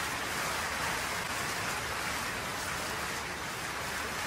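Audience applauding steadily: a sustained ovation of dense, even clapping.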